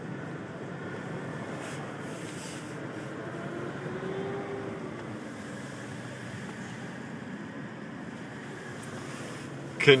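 Steady engine and road hum heard from inside a car waiting at a red light, as a semi tractor with no trailer drives past close by; a faint engine note rises and falls about four seconds in.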